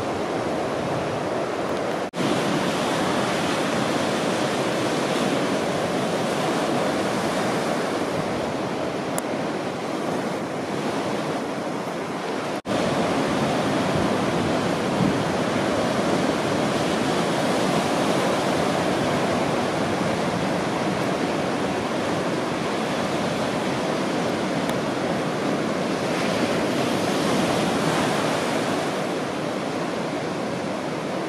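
Ocean surf: waves breaking on a sandy beach, a steady even rush of noise. It breaks off for an instant twice, about two seconds in and again near the middle.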